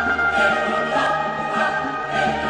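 Background music with a choir singing held notes over a light pulse of about two beats a second.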